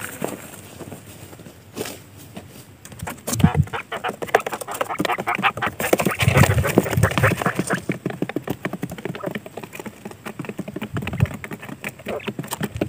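Quail calling in a rapid chatter of short, clicky notes, loudest from about three to eight seconds in.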